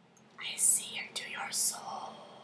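A woman's whispered, breathy voice: two sharp hisses, about half a second and a second and a half in, with a click between them.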